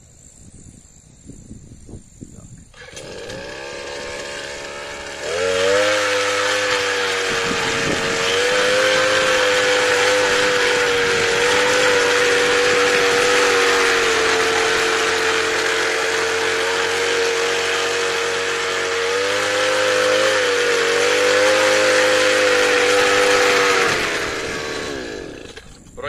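Petrol brush cutter fitted with a cultivator attachment. Its engine comes in low a few seconds in, is throttled up to a steady high speed about five seconds in and held there while the tines dig into dry, firmer soil, then drops back near the end.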